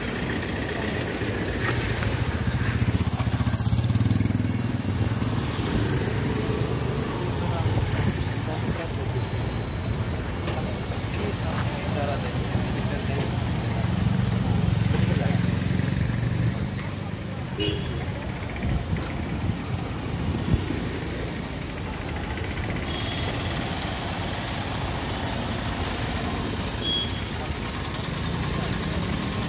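Car engines idling and street traffic running steadily, with a low rumble that swells and eases as vehicles pull up and move off.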